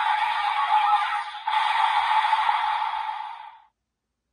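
Desire Driver toy belt's small built-in speaker playing its Monster Strike finisher sound effects, tinny with no bass. There is a short break about a second and a half in, and the sound fades out shortly before the end.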